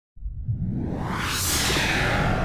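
A whoosh transition sound effect: a rush of noise starts a moment in and swells, brightest about one and a half seconds in, over a low rumble.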